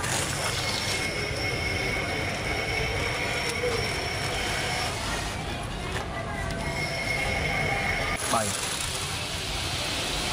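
Small DC motor of a homemade toy truck running with a steady high whine, its bottle-cap wheels rolling on a wooden floor. The whine breaks off briefly about five seconds in and stops about eight seconds in.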